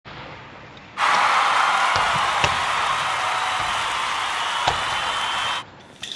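Steady loud hiss of gymnasium room noise, with three sharp knocks of a basketball striking, about a second in, soon after, and near the end.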